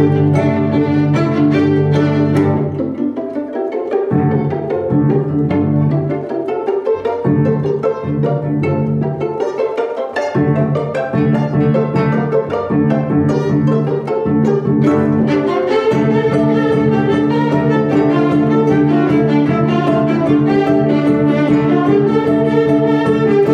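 A string quartet, two violins, viola and cello, playing with the bow: sustained chords that thin out after a couple of seconds, with the low part dropping in and out, then swell back to a fuller sound about fifteen seconds in.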